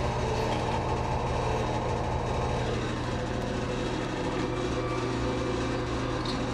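A steady low hum with one constant low tone, even in level throughout.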